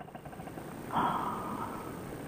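Paramotor's two-stroke engine idling in flight with a fast, faint chatter that fades out. About a second in comes a short breathy rush of air.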